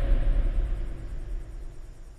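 Deep low rumble fading steadily away: the dying tail of a film-trailer boom.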